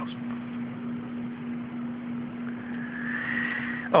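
A steady low hum over background hiss, with a faint whine that slowly rises in pitch over the last second and a half.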